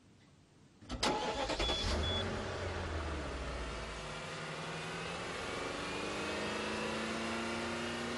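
Hongqi V12 car engine starting about a second in, with a deep rumble for the first few seconds and then settling into a steady idle. Two short high beeps sound just after it fires.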